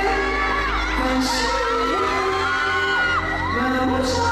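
Amplified song playing through a hall's sound system, with high-pitched screams and whoops from the crowd sliding up and down over it.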